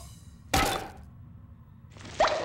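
A single heavy thunk about half a second in, with a short fading tail: a cartoon impact sound effect.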